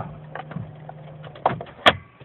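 2004 Saturn VUE's 2.2-litre Ecotec four-cylinder engine idling with a low steady hum, with a few light clicks and one sharp click near the end.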